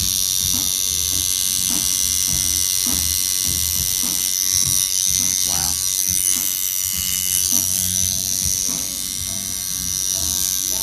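Electric tattoo machine running with a steady high buzz as it lines a small tattoo into skin.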